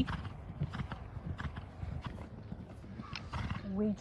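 Faint hoofbeats of a ridden horse cantering on a sand arena footing, a series of soft irregular thuds.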